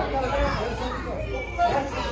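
Overlapping chatter and laughter of a class of students, children among them, talking at once.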